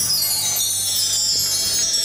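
Many high, ringing chime-like tones at once, sliding slowly downward, over a faint low steady hum.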